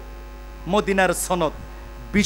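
Steady low electrical mains hum from the microphone and sound system, with a man's voice breaking in briefly in the middle.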